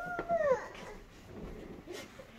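A young child crying: a high, wavering wail that falls and breaks off about half a second in, followed by a quieter stretch.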